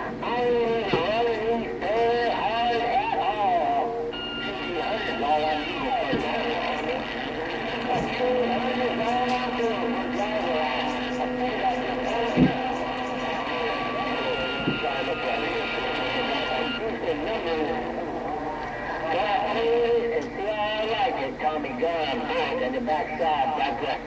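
CB radio receiver carrying garbled, overlapping voices of distant skip stations over steady hiss. Steady high whistling tones come in about four seconds in and drop out past the middle, and a single sharp click is heard about halfway through.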